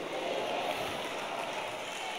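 Faint, steady room noise picked up by the pulpit microphone, an even hiss with no distinct events.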